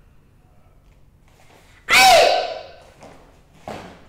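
A karate student's kiai in Shotokan kata: one loud, sharp shout about two seconds in, its pitch falling as it trails off. A shorter, quieter burst follows near the end.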